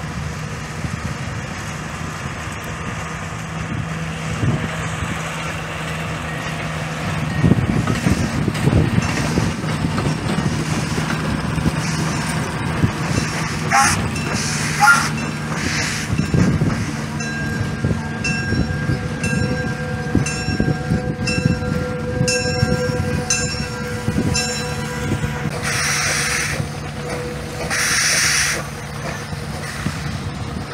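Small steam locomotive train passing slowly, behind a motor track car: a steady low hum and rumble. Repeated short ringing tones sound through the second half, and two short bursts of hiss come near the end.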